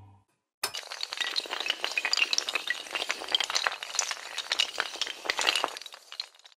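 Sound-effect clatter of many small hard pieces clicking and clinking in quick, irregular succession, like tiles or dominoes toppling. It starts suddenly just over half a second in and runs on to the end.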